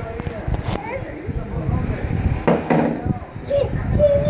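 Indistinct voices over a low rumble, with a sharp knock about two and a half seconds in. Near the end a small child's long, high-pitched cry begins.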